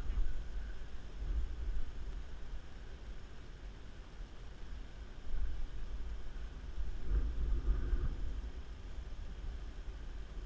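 Low, uneven rumble of wind on the microphone, swelling about five seconds in and again around seven seconds.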